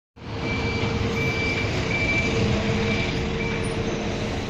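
Five short high electronic warning beeps from a London bus standing at the stop, over the steady hum of its idling diesel engine.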